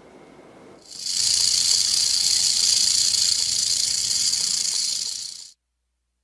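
Rattlesnake rattling its tail: a steady, high, dry buzz that starts about a second in, holds for about four and a half seconds and cuts off suddenly.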